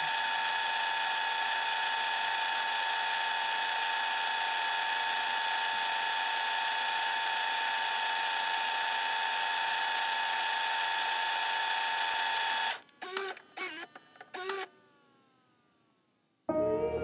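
VHS tape-rewind sound effect: a steady, even motor whine held for about thirteen seconds. It breaks into a few short stuttering blips with falling pitch and then cuts off suddenly.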